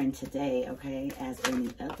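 A low human voice in short pitched sounds without clear words, with a few light clicks of tarot cards being shuffled by hand.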